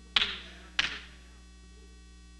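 Two sharp smacks about two-thirds of a second apart, each dying away briefly, over a steady electrical mains hum.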